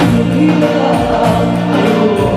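Live band music with held chords and sustained notes, from a Bollywood stage band of keyboards, dhol, tabla and electric guitar.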